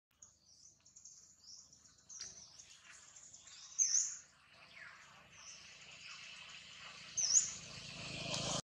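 Small birds chirping: short, high, thin calls repeated throughout, with two louder chirps about four seconds in and again near the end.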